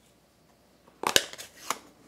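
About a second of near silence, then a few sharp clicks and taps, the loudest just after a second in: the plastic case of a stamp ink pad being handled, opened and set down on the table.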